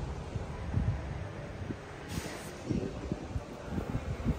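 Wind buffeting a phone's microphone, an uneven low rumble with a light hiss above it, broken by a few soft low thumps from the phone being handled.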